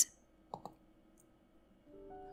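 A computer mouse clicking twice in quick succession, about half a second in, against near silence.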